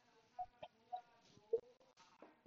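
Four faint, short animal calls, like clucks, in the space of about a second and a half.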